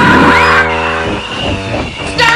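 Cartoon soundtrack: held orchestral chords over a loud noisy rush, with a brief curling glide in pitch about a quarter second in, a comic sound effect for a character flying through the air.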